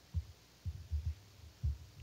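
A few soft, low thumps at irregular intervals, with no speech.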